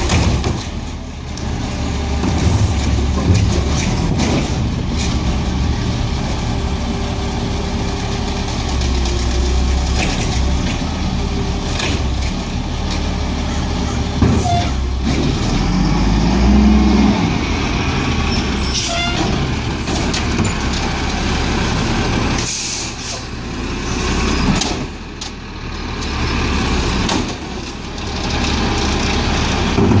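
Diesel engine of a Peterbilt 320 automated side-loader garbage truck idling steadily. Over it come the knocks of the automated arm lifting and dumping recycling carts and short hisses of the air brakes as the truck creeps forward and stops.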